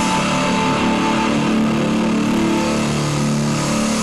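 Heavy rock band playing live, with sustained, held distorted guitar and bass notes and little drumming. It is heard through a camcorder in the crowd.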